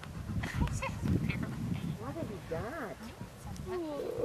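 A woman's laugh in quick rising-and-falling bursts in the second half, after a low rumbling noise with a few faint clicks in the first half.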